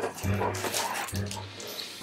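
Several dogs moving about on a tiled floor, claws clicking, with soft dog vocal sounds.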